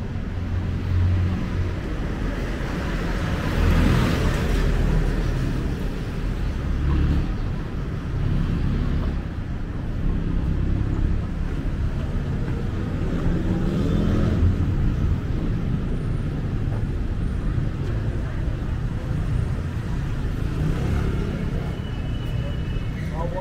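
Road traffic on a city street: steady engine and tyre noise, with a vehicle passing close about four seconds in and another around fourteen seconds, its engine pitch sliding as it goes by.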